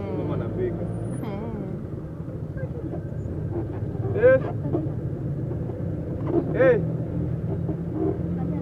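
Steady engine and road noise of a moving Nissan, heard from inside the cab. Two short loud voice calls cut through it in the second half, the last a shouted "Hey!".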